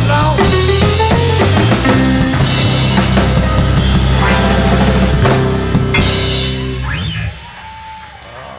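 Live rock and roll band with drum kit and piano playing an instrumental passage, cutting off about seven seconds in, after which the sound drops sharply.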